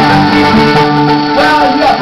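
Live acoustic music: a violin playing over a steady held note, with plucked strings in the mix.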